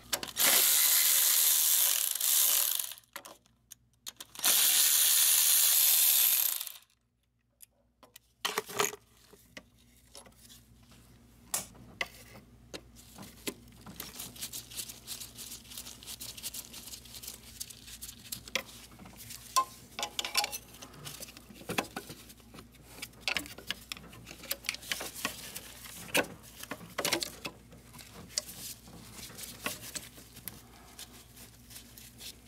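A power tool runs in two bursts of about two and a half seconds each, undoing bolts in a diesel van's engine bay. After a short gap come scattered small metallic clicks and clinks of hand tools and parts being handled.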